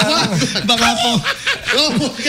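Several men chuckling and laughing over speech close to studio microphones.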